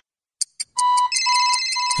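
Electronic ringtone-like sound effect. Two short clicks, then a beep repeating about twice a second over steady high ringing tones.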